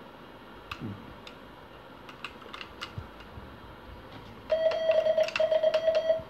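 Semi-automatic telegraph key (bug) with faint clicks as it is handled, then from about four and a half seconds in a fast run of Morse dots: a steady beep broken by short gaps, with the key's contacts clicking. The dot speed is being set by the position of the sliding weight on the vibrating arm.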